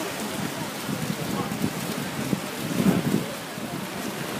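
Small fountain jets splashing into a shallow pool, a steady watery hiss, with wind rumbling on the microphone and swelling about three seconds in.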